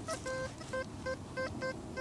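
Goldmaxx Power metal detector giving a run of about seven short, same-pitched beeps, roughly three a second, as its search coil is passed back and forth over a dug hole: the target signal of a Roman coin lying at the edge of the hole.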